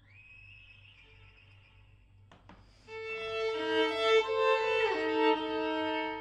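Solo violin: a soft high note slides up and is held, then after a short pause a loud passage of several notes bowed at once begins about halfway through, with a downward slide just before it ends and rings out.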